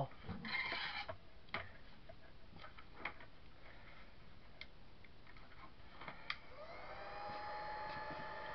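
Scattered clicks and knocks from objects handled on a table. About six seconds in, a craft heat gun clicks on and its fan motor spins up to a steady whine, ready to dry the glued work.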